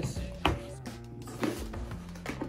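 Cardboard product box being handled, with one sharp tap about half a second in and a few softer knocks after it, over quiet background music.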